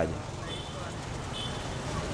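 Street traffic ambience with vehicles running and faint voices in the background.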